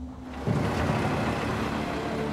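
A steady rumbling noise starts about half a second in and holds, over background music with sustained low tones.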